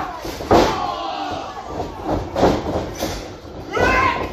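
Wrestling-ring impacts: bodies slamming against the ring, a loud slam about half a second in and several more thuds after it, with voices shouting near the end.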